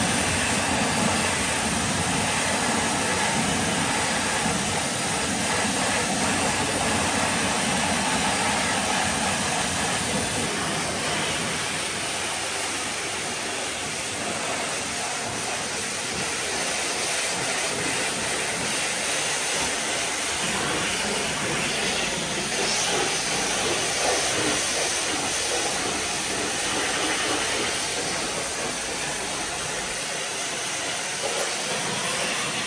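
A pressure washer's high-pressure water jet rinsing foam and wheel cleaner off a car's alloy wheel and bodywork: a steady hiss of spraying water. Its deeper part drops away about ten seconds in.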